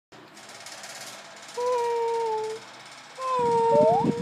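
A person making two long, steady hooting "ooo" calls, each held for about a second, the second sliding upward at its end. Choppy laughter comes in under the second call.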